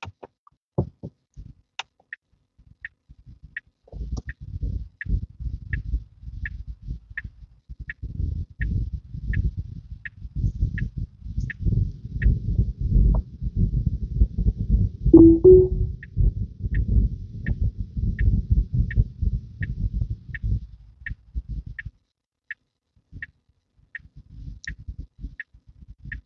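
Tesla Model 3 turn-signal indicator ticking steadily, about one and a half ticks a second, in two runs with a pause in the middle, over an uneven low rumble of the car driving.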